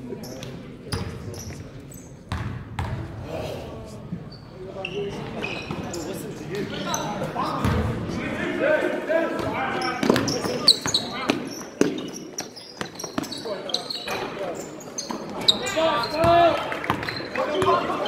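Basketball being dribbled on a hardwood gym floor during play, a run of sharp bounces, with players' voices calling out in the echoing hall, loudest in the second half.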